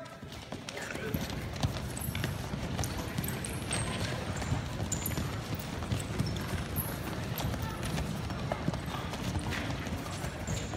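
Many wrestling shoes stepping, shuffling and scuffing on foam wrestling mats in a quick, irregular patter as several pairs of young wrestlers push, pull and move each other around in stance.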